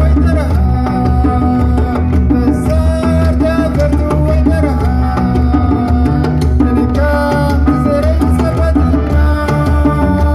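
A Tuareg desert-blues band playing live: electric guitars over bass, a drum kit and hand drum, loud and continuous.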